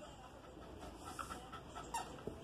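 A corgi puppy making a few faint, short, soft sounds as it trots back with a ball in its mouth.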